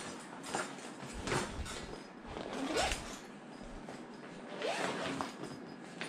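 A clear plastic zippered pouch being handled and opened while a drill is lifted out of it: scattered quiet crinkles and rustles, with a couple of short zip-like sweeps around the middle. The drill itself is not running.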